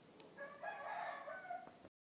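A rooster crowing once, faint and in the background, a drawn-out call of a little over a second.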